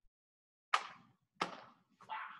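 Two sharp slaps about 0.7 seconds apart, from hands striking body or uniform as two people grapple at close range.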